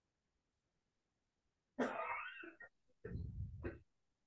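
A person coughs sharply about two seconds in, then makes a second, lower throat-clearing sound about a second later.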